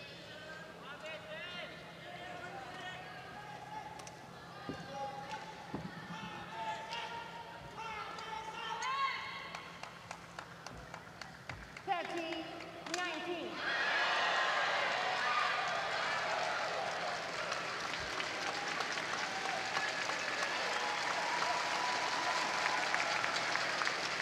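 Arena crowd at a badminton match: scattered spectators calling out, then about fourteen seconds in a broad burst of applause and cheering that carries on.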